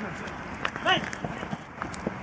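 Footballers on a grass pitch during play: a short shout from a player about a second in, over a steady outdoor background with a few light thuds.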